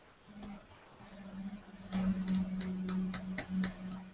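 Light clicking from computer controls, about five clicks a second through the second half, over a low steady hum.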